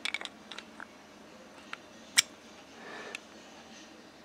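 Plastic pod cartridge and body of a Joyetech Exceed Edge pod vape being handled: a scatter of light clicks and taps as the pod is worked in the device. The loudest is a single sharp click about two seconds in.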